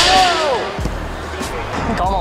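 An excited vocal cry bursts out right at the start, its pitch swooping up and down for under a second, over background music with a steady low beat.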